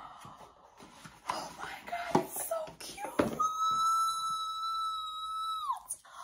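Cardboard product box handled with a few light knocks, then a woman's long, high-pitched squeal of excitement, held steady for over two seconds and dropping in pitch as it ends.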